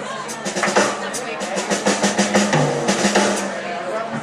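Drum kit played in quick runs of snare strokes, like short rolls, in two bursts, with a steady low note ringing underneath.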